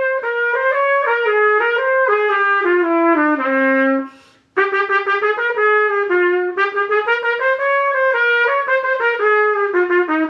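Unaccompanied trumpet playing an étude, a single melodic line moving note to note. It breaks off briefly for a breath about four seconds in, after a low held note, then carries on.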